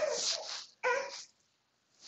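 A baby making two short high-pitched vocal squeals, the second briefer than the first.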